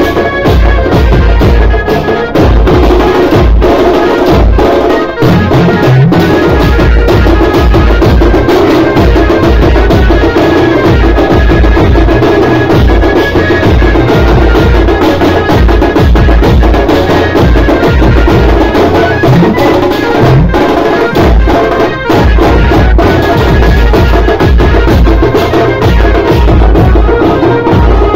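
Very loud street-procession music: dense, continuous drumming over a booming bass beat.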